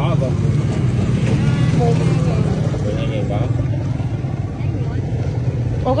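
Steady low rumble of running vehicle engines, with faint voices over it.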